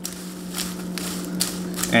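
Popcorn being stirred and tossed with a silicone spatula in a glass mixing bowl: light rustling with small irregular scrapes and ticks. A steady low hum runs underneath.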